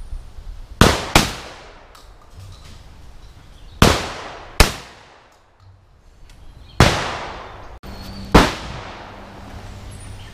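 Shotgun shots at clay targets: six sharp shots, mostly in quick pairs a few seconds apart, each one ringing off briefly.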